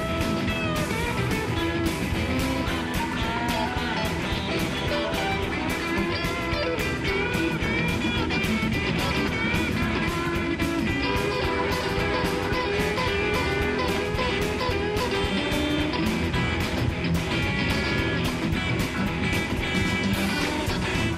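Live rock band playing an instrumental passage: two electric guitars over a steady drum beat, with no singing.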